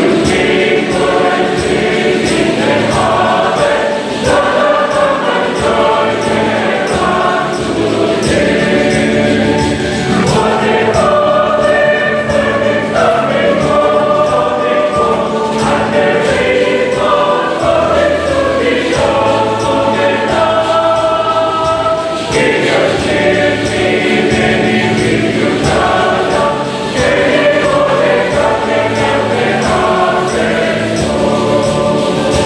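A choir of many voices singing a hymn together without a break.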